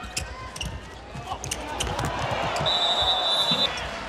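Handball match sound in an arena: the ball bouncing on the court among sharp knocks, with crowd noise that swells about two seconds in. A referee's whistle sounds one steady blast of about a second near the end.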